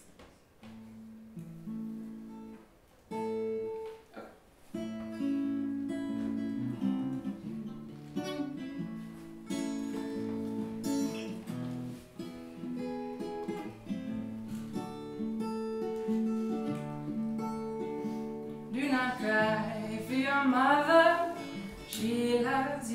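Acoustic guitar with a capo playing a slow, picked song intro: a few sparse notes at first, then a fuller, steady pattern. A woman's singing voice comes in near the end.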